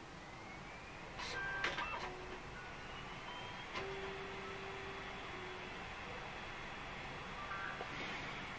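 Laptop DVD drive spinning up to read an installation disc: a faint whine rising in pitch over about four seconds and then holding steady, with a few clicks in the first two seconds.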